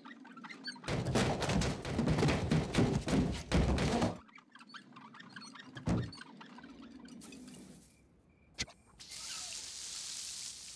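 About three seconds of thumping and scraping, then a single thud. Near the end comes a sharp click, followed by the steady hiss of lawn sprinklers spraying water.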